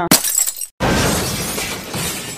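Glass-shattering sound effect: a sharp crash right at the start, then a second crash a little under a second in that slowly fades away.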